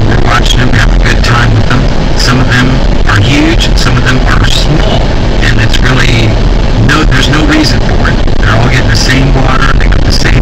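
Car driving on a paved road, with a loud, constant low rumble and an indistinct voice over it.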